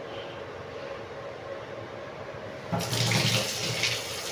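Water running from a tap in a short spell of about two seconds, beginning near the end, over faint steady room noise.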